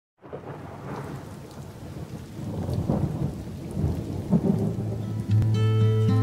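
Recorded rain with low rumbling thunder, growing louder. Acoustic guitar notes come in near the end.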